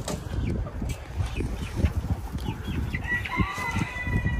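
Chickens clucking briefly, then a rooster crowing once near the end, one long drawn-out call, over a low rumble.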